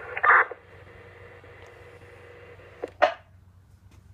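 Two-way radio speaker: the tail of a voice transmission, then an open channel's steady hiss. About three seconds in, a short burst of squelch noise cuts the hiss off.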